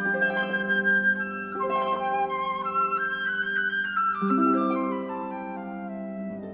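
Instrumental classical music: long held melody notes over a softer accompaniment, moving to new chords about one and a half and four seconds in, and getting quieter toward the end.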